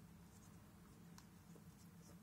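Near silence: a few faint clicks and rubbing of small plastic transforming-figure parts being handled and pegged together, over a low steady hum.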